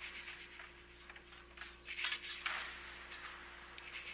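Faint battle-scene soundtrack from a TV episode: scattered noisy crashes and rustles, with a louder rush about two seconds in.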